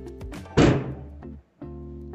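A single heavy thunk about half a second in, fading out over most of a second, over steady background music.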